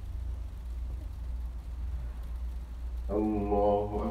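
A low steady hum runs throughout. About three seconds in, a man's chanted voice comes in on a long, held, level pitch: the imam intoning a takbir between prayer positions.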